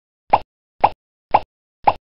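Four short cartoon 'plop' sound effects, about half a second apart, as four concentric rings pop onto the screen in an animated intro.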